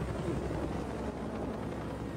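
Helicopter running, a steady rumble of engine and rotor noise from a TV drama's soundtrack.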